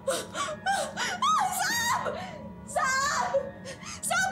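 A woman's wordless distressed voice, whimpering and wailing in short gliding cries, some with a wavering pitch, over background music.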